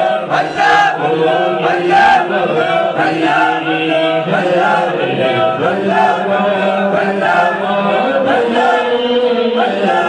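A group of men chanting devotional Sufi verses together in a steady, unbroken stream.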